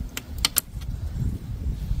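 A handful of quick metallic clinks in the first second, from a ratchet and socket being handled at a socket case, over a low steady rumble.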